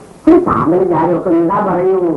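Speech: a woman's voice talking, starting about a quarter second in after a brief pause.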